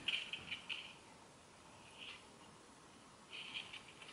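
Faint, brief rustles and scratches of a canvas zip pouch being handled, a few times over otherwise near-quiet room tone.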